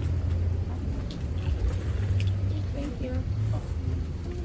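Low, steady rumble of road traffic, with faint voices and a few light clicks.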